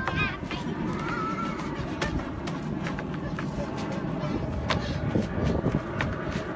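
Young children squealing and calling out while playing chase, with short high shrieks near the start and about a second in. Sharp knocks of running footsteps on wooden decking come and go throughout.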